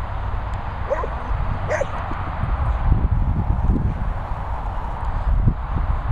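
A collie-cross dog giving two short, high yips while playing with a ball, about a second in and again just under a second later, over a steady low rumble.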